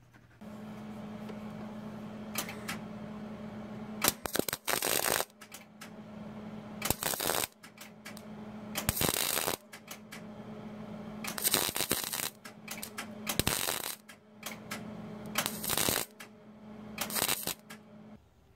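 Wire-feed welder laying short stitch welds along the seam of a steel cab-corner patch panel, closing it up spot to spot. There are about eight crackling bursts of half a second to a second each, over a steady low hum.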